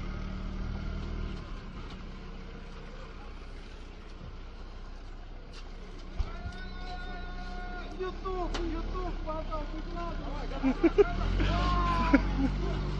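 An engine running steadily with a low hum, with a single sharp knock about halfway through and indistinct voices in the second half.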